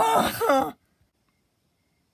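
A person's short laugh, ending about three quarters of a second in.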